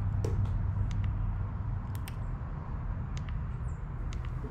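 Steady low outdoor background rumble with a few faint clicks and a brief high chirp near the end.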